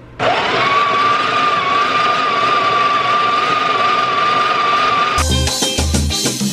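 Espresso machine running: its motor spins up with a rising whine, holds it steadily, and cuts off suddenly about five seconds in. Background music with a beat follows.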